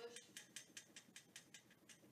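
Faint, quick taps of a ruffled paintbrush jabbed repeatedly against a stretched canvas, about six a second, stippling in a bush.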